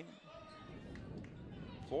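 Faint sound of a basketball game on a hardwood gym court: the ball bouncing and players moving, under a low hum of arena noise.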